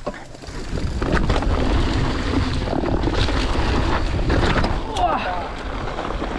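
Wind rushing over a helmet camera's microphone as a Giant mountain bike rolls down a dirt and gravel trail, with tyre noise and the bike rattling over bumps. The sound gets louder about a second in.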